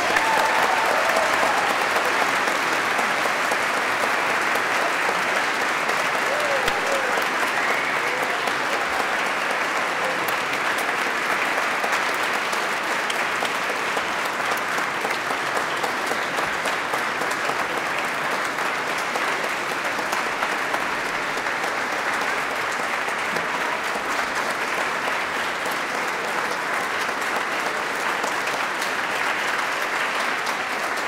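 Large concert audience applauding steadily and at length in a cathedral, right after a choral piece ends.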